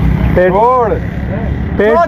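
A man's voice holding one drawn-out syllable that rises and falls in pitch, with another word starting near the end, over a steady low rumble.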